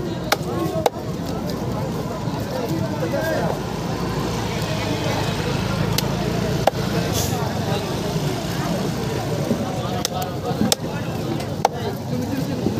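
A large knife cutting a bubara (trevally) on a wooden chopping block, with a handful of sharp, irregularly spaced knocks as the blade strikes the block. Behind it runs a steady din of voices and a low hum.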